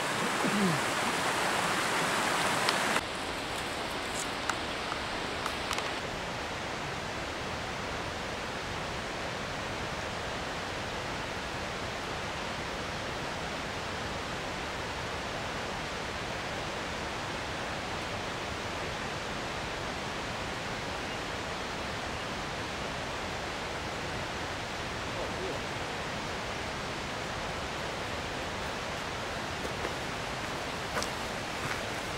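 Small mountain creek rushing over rocks for about three seconds, then a sudden drop to a quieter, steady, even hiss of outdoor ambience with a few faint clicks.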